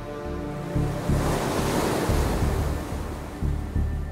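Sea waves breaking: a wash of surf that swells about a second in and dies away near the end. Background music with held tones and a low pulsing beat runs underneath.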